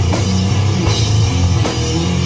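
Heavy doom/stoner rock played live: a slow, low electric guitar riff over a drum kit, with cymbal crashes about once a second.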